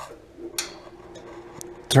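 Osburn 2300 wood stove's rear blower fan switched on with a click about half a second in, then running with a steady hum.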